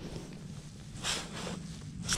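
Soft rustling of snow pants and boots shifting on snowy ice, with a brief louder scuff about a second in.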